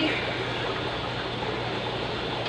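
Steady hiss and trickle of aquarium water running through a siphon hose into a bucket, over a constant low hum.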